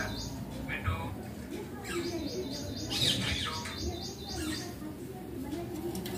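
Indian ringneck parrot chattering: short high chirps and squeaks, with quick runs of several chirps a second in the middle.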